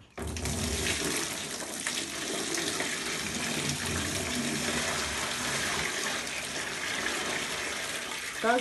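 Water pouring in a steady stream from an opening in a stretch ceiling into a plastic basin: hot water from a flood in the flat above, which had collected in the ceiling, being drained off.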